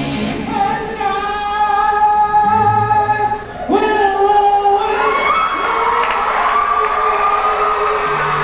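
Live rock band with electric guitar, bass and vocals playing long held high notes with the drums largely dropped out; after a short break about halfway, a new held note slides upward in pitch.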